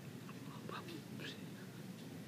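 Quiet room tone with a steady low hum, broken by a few faint soft clicks and rustles in the first second and a half.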